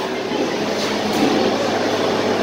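Steady rushing background noise with faint voices in the distance.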